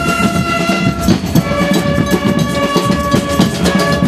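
Marching band of clarinets and brass, with a sousaphone on the bass line, playing long held chords over a steady drum beat.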